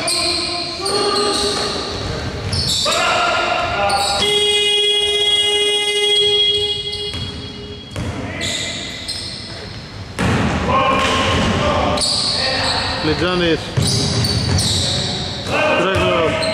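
Shot-clock buzzer sounding one steady electronic tone for about three seconds, starting about four seconds in as the shot clock runs out. Around it, a basketball bounces on the wooden court and players' voices echo in the large hall.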